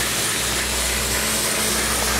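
Dry cement powder pouring from a bag into a plastic bucket: a steady hiss, over a low steady rumble.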